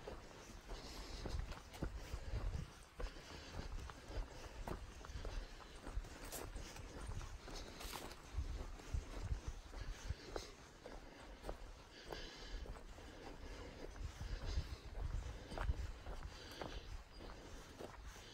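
Footsteps of a hiker walking on a dirt forest trail, with irregular low thuds from the steps and light scuffs.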